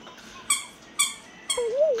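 Electronic sounds from a handheld light-up toy: three short beeps about half a second apart, then a warbling tone that rises and falls about four times a second.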